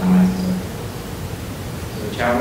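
A man's voice holding a hesitant "uhh" for about half a second, then a pause filled only by steady background hiss.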